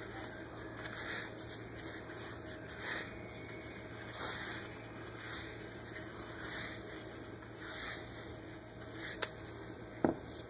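Foam pre-wrap being unrolled and wound around a lower leg ahead of ankle taping: faint soft rustles about once a second over a low steady hum, with one sharp click near the end.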